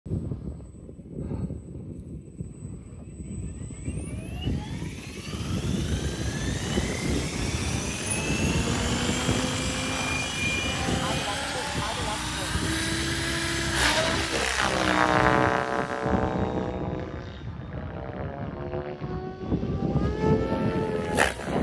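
Electric OMPHOBBY M7 RC helicopter spooling up on its brushless motor, set to a 2050 rpm headspeed: its whine rises in pitch from about four seconds in, then holds steady as it lifts off and flies. Near the end the pitch shifts again as it climbs and manoeuvres.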